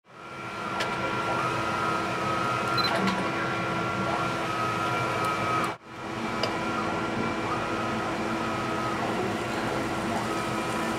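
Steady hum and whine of lab machinery, with held high tones that step slightly in pitch now and then and a few faint clicks. The sound drops away for a moment just before the middle, then returns the same.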